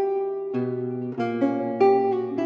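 Solo baroque lute playing: plucked notes ring and die away, with a low bass note about half a second in and three more notes plucked in the second half.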